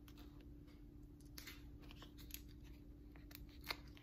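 Faint rustling and a few light clicks of sticker sheets and metal tweezers being handled over a planner page, the sharpest click near the end, over a steady low hum.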